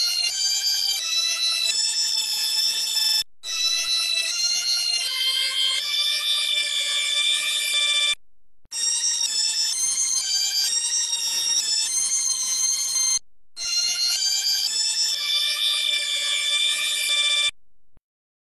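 Synthesized organ from the Organito 2 VST plugin playing a slow line of held notes that shift in pitch, in four phrases of a few seconds each separated by brief gaps. The tone is bright and shrill, heavy in high overtones, with little low end.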